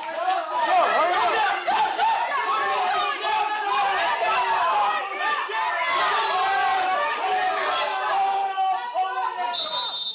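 Many voices shouting over each other, instructors yelling at cadets during push-ups in a large, echoing barracks room. A brief high steady tone sounds near the end.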